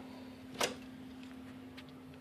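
Steady low hum from a switched-on 1x6 CB linear amplifier, with a single sharp click just over half a second in.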